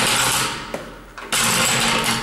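Trolley floor jack's wheels rolling and grinding on a concrete floor as the jack is swung round under the weight of a milk tank, in two pushes: one at the start and a second, longer one from about a second and a half in.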